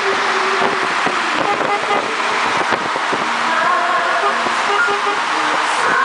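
Car driving: a steady rush of road and wind noise, with music and voices underneath.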